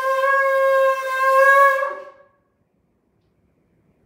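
A shofar blown in a long, steady held note that dies away about two seconds in.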